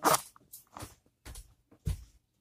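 Handling noise: a short rustling scrape, then a few soft clicks and a duller thud near the end, as of something moving against or near the microphone.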